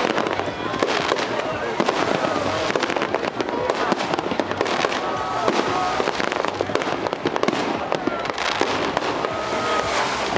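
Fireworks display going off without a break: a dense, overlapping string of bangs and crackling bursts.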